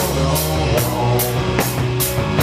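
Live rock band playing, led by a drum kit with cymbal strokes about two and a half times a second and an electric guitar underneath.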